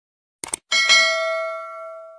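Subscribe-button animation sound effects: two quick clicks, then a bell ding that rings out and fades over about a second and a half.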